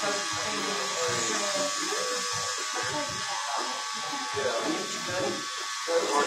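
Electric hair clippers running with a steady hum as they cut hair at the back of a man's head.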